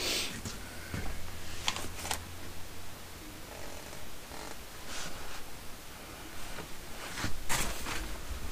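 Rustling and light knocks of items being handled and moved about on a cluttered table, coming in irregular bursts, the loudest rustle near the end.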